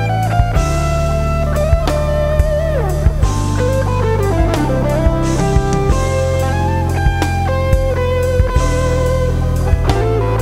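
Live band playing an instrumental passage: an electric guitar lead, with a line that slides down in pitch about three seconds in, over electric bass, keyboards and a drum kit.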